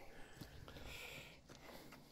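Faint footsteps and a soft rustle of dry leaves as someone walks down earth-and-log steps covered in fallen leaves; otherwise quiet.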